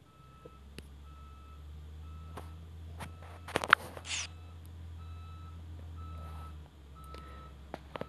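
A short high electronic beep repeating about once a second over a steady low hum, like a warning beeper. A brief, louder burst of noise comes about three and a half seconds in.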